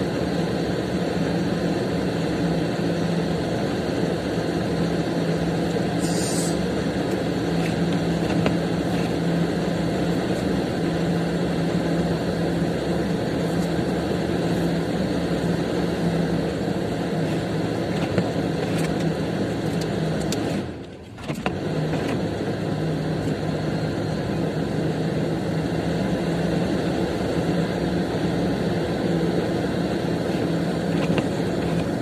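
Steady car-cabin noise from a running car, with a low steady hum under it. The sound drops away for about a second about two-thirds of the way through.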